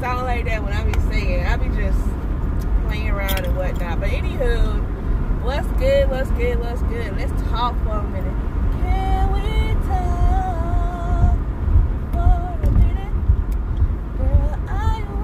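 A woman singing wordlessly or indistinctly, her voice gliding and holding notes for a second or more, over the steady low rumble of a car driving.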